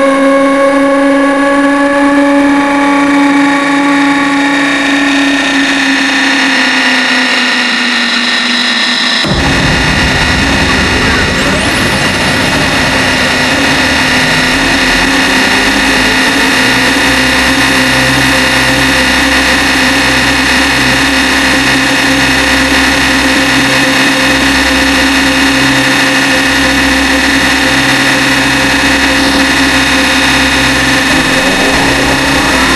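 Hardstyle electronic dance music. It opens with sustained synth chords and no bass or drums. About nine seconds in, a heavy low beat and bass come back in, running on under a held synth tone.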